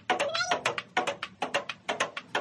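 Table tennis rally against the folded-up half of a table: quick clicks of the ball off the paddle, the upright board and the table top, about four or five a second. A brief pitched sliding sound comes about a quarter second in.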